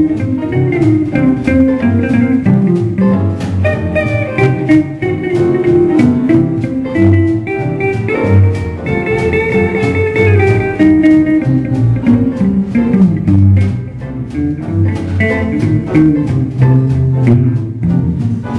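Live blues played on hollow-body archtop electric guitars through amplifiers: plucked notes over a steady, strong low accompaniment.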